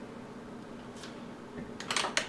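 Hands handling a Remington 1100 12-gauge shotgun over quiet room tone: a faint click about halfway, then a few sharp metallic clicks near the end.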